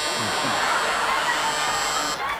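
Electric game-show buzzer giving one long, steady buzz, the signal to cut from one pair of performers to the other, over studio audience laughter.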